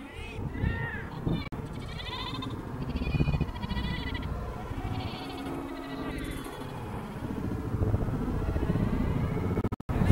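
Indistinct distant shouts and calls of children and onlookers across an open playing field, rising and falling over a steady background murmur, with a brief break just before the end.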